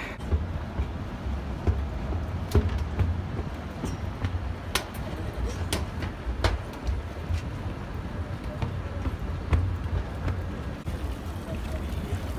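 Wind buffeting the phone's microphone: an uneven low rumble, with a few sharp clicks and knocks scattered through it.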